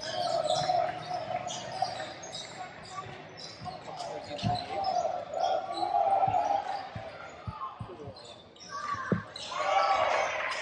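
Basketball bouncing on a hardwood gym floor, a handful of separate knocks, with sneakers squeaking and voices around the echoing gym.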